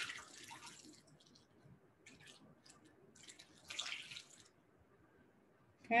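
Filtered water poured from a jug through a plastic funnel into a bottle, trickling in a few short spurts, with the strongest pours at the start and around four seconds in.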